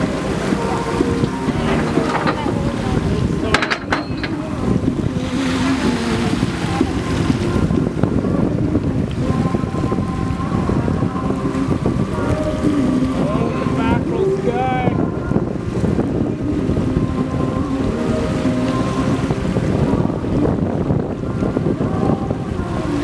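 Boat engine running steadily, with wind on the microphone and choppy water against the hull. There is a brief wavering high squeal about two-thirds of the way through.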